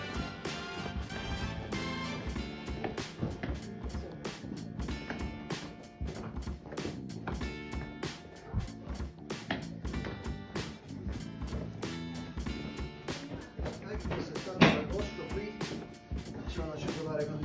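Background music with a steady beat, with a single sharp knock near the end as the loudest sound.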